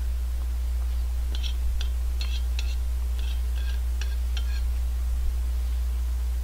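Steady low electrical hum, with about eight faint light clinks of a metal spoon against a plate in the middle few seconds.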